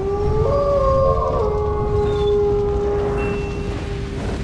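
Wolf howling: one long howl that rises at first and then holds steady, with higher howls overlapping it in the first second and a half, over a steady low rumble.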